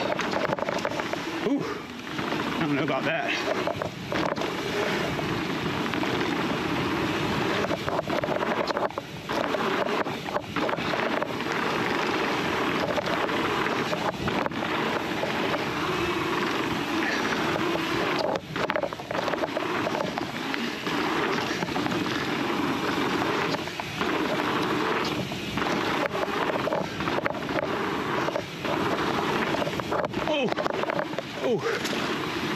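Fezzari La Sal Peak full-suspension mountain bike ridden fast down a dirt trail: steady tyre and wind noise, broken every few seconds by knocks and rattles as the bike hits bumps.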